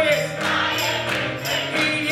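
Gospel choir singing with instrumental accompaniment: steady bass notes under the voices and a regular beat of sharp strokes.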